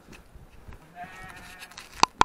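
A sheep bleats once, about a second in, in a single call just under a second long.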